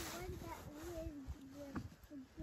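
Children's voices talking quietly, faint and indistinct.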